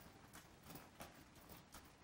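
Faint hoofbeats of a newly shod Tennessee Walking Horse filly gaiting on a gravel lane, heard as soft, irregular clops over a low background hush.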